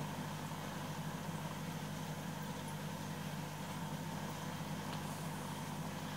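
A steady low machine hum, even throughout, with no other events.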